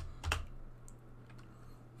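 A few separate keystrokes on a computer keyboard, typing a line of code slowly, the loudest about a third of a second in.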